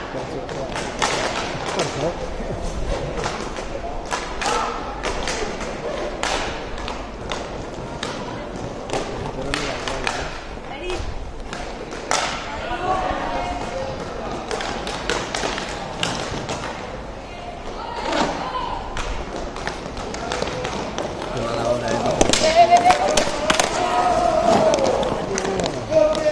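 Inline hockey play: scattered clacks and knocks of sticks hitting the puck and the rink floor, with voices shouting over it, loudest in the last few seconds.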